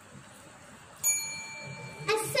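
A small bell struck once about a second in, a clear ding that rings on and slowly fades: the competition's timing bell, the cue for the contestant to begin.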